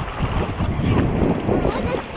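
Gusty rushing noise of wind buffeting an action camera's microphone, over shallow creek water moving around the wader's legs.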